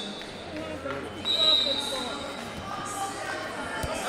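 A referee's whistle gives one long, steady, shrill blast a little after a second in, over the shouting and chatter of voices echoing in a large arena. A short thump sounds near the end.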